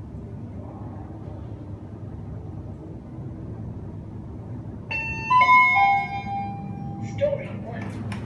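Fujitec elevator car running down with a steady low hum. About five seconds in, an electronic arrival chime plays a short run of stepped, steady notes as the car reaches the floor.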